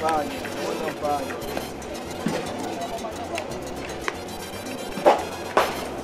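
Background song with a singing voice over a steady beat; a couple of sharp knocks stand out near the end.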